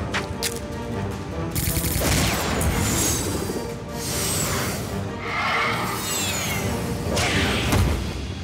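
Animated action-scene soundtrack: background music mixed with booms and crashes, and a couple of high gliding effect sounds about three and six seconds in.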